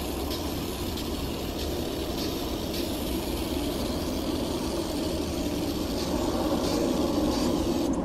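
Airplane passing overhead: a steady, rumbling drone that grows slowly louder. Over it runs a continuous hiss from an aerosol can of oven cleaner being sprayed onto a wire oven rack, which cuts off at the end.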